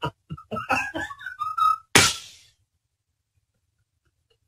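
A man laughing hard in quick rhythmic bursts. About a second in, the laughter turns into a high, wavering, crying wail. It ends with a sharp breath about two seconds in.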